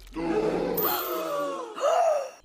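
An animated character's drawn-out gasp of shock, its pitch wavering, followed near the end by a short rising voice sound.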